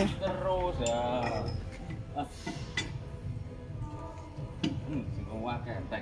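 A few separate metal clinks of a wrench and hand tools against the wheel fittings of a vibratory soil-compactor roller, with voices talking indistinctly in the background.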